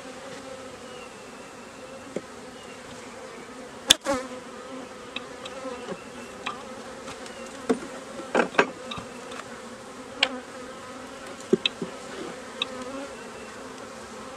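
Honeybees buzzing steadily around an open hive, a continuous hum with a few short clicks and knocks over it. The sharpest click comes about four seconds in, and a cluster of knocks follows a little past the middle.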